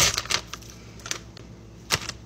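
Plastic packaging crinkling as a frozen ramen noodle block is pulled out of its bag, fading about half a second in. A few light taps follow, with one sharp click near the end.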